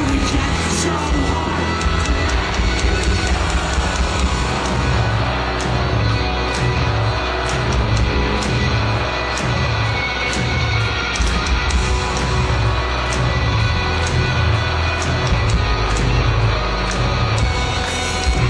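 Live pop-punk band playing loudly: distorted electric guitars, bass and drums with a steady beat.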